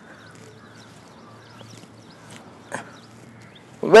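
Quiet outdoor background with a faint low hum, broken by a single short click nearly three seconds in; a man's voice starts at the very end.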